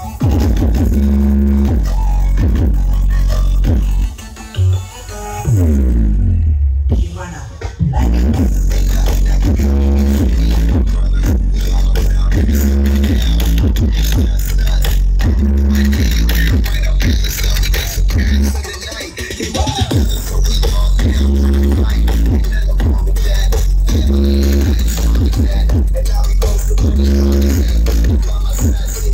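Loud electronic dance music with heavy bass and a steady beat, played through a large parade sound system. A falling pitch sweep and brief drop-outs come around five to eight seconds in, with another short dip near the twenty-second mark.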